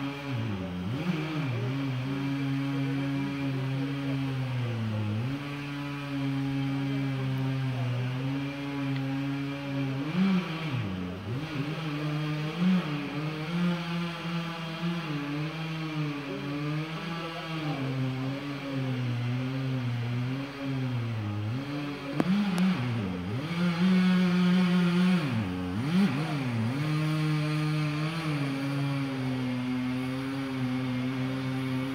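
Chainsaw engine running at high revs, its pitch dropping and climbing back several times as it cuts, a little louder toward the end.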